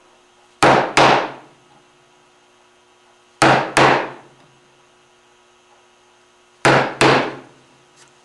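Mallet striking a bench chisel to chop the waste between dovetail tails in a curly maple board: three pairs of sharp blows, the two blows of each pair about a third of a second apart, with roughly three seconds between pairs.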